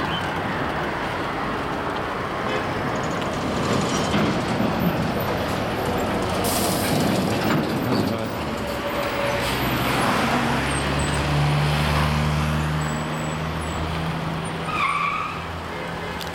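Street traffic noise: cars driving along a town street. A steady low engine hum sets in about ten seconds in.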